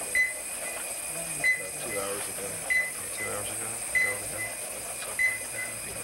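Bedside patient monitor beeping in time with the patient's heartbeat: one short, high beep about every second and a quarter, with low murmured voices underneath.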